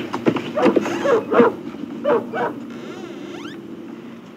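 Dog whimpering in a run of short, pitched cries, about two a second, thinning out after the first two seconds.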